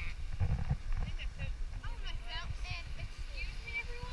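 Faint voices talking, with no clear words, over an uneven low rumble that is strongest about half a second in.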